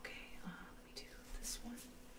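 Soft whispering, then a few faint, sharp clicks as a small glass dropper bottle is handled in latex gloves.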